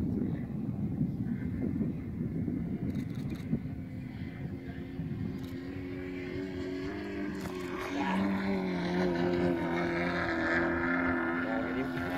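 Wind rumbling on the microphone, then from about halfway a model aircraft engine drones at a steady pitch, getting louder about eight seconds in.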